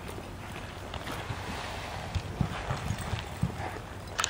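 A cutting horse's hooves thudding irregularly on soft arena dirt as it moves with a calf, the low thumps bunching up in the second half.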